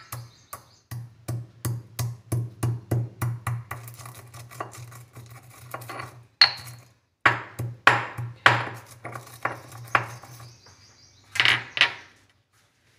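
Stone pestle pounding dry coriander seeds in a white stone mortar, a steady run of sharp knocks at about three a second, with a short break about seven seconds in and a few louder knocks near the end.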